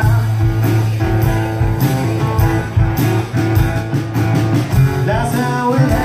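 Live acoustic duo: two acoustic guitars strumming and picking a blues song, with a man singing near the end.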